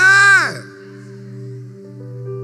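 A loud, drawn-out exclaimed "É!" in the first half second, its pitch rising then falling, over a soft sustained background music chord.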